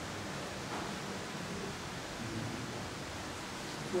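A pause in speech filled by a steady hiss of room tone and recording noise.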